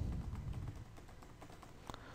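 Computer keyboard being typed on quietly: a run of soft keystrokes, with one sharper key click near the end.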